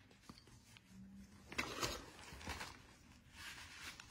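A quiet room with a few faint rustles and soft knocks as a rubber-soled toe shoe and its plastic bag are handled.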